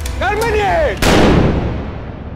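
A single loud pistol shot about a second in, hitting suddenly and dying away over most of a second. Just before it, a short pitched sound rises and falls.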